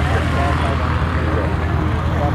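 Small propeller-driven bush plane's piston engine running with a steady low drone, with people's voices talking faintly over it.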